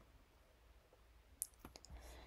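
Near silence: room tone with a few faint clicks, about one and a half seconds in.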